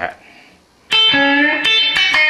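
Electric guitar, a Telecaster-style solid body, playing a country lead lick about a second in: several sharply picked notes in quick succession, ringing on.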